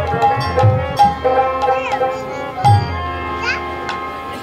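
Bengali kirtan music: a harmonium holding steady notes while khol drums strike a few heavy strokes, the strongest near the start and about two-thirds through, with bright cymbal clicks and a couple of short sliding high notes over the top.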